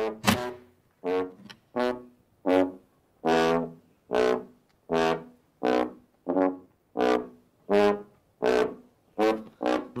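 Tuba played in a run of short, separate notes, a little more than one a second, the pitch shifting from note to note.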